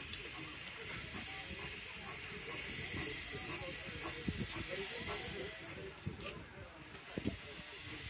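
Small steam tank locomotive hissing steam steadily as it rolls slowly toward the platform. The hiss eases briefly about six seconds in.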